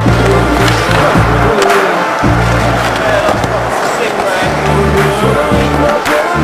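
Hip-hop backing music playing, mixed with a skateboard's wheels rolling on a smooth concrete floor.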